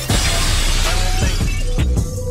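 Glass-shattering sound effect over electronic music with a heavy beat: a sudden crash of noise at the start that dies away over about a second and a half, while the beat's low hits carry on.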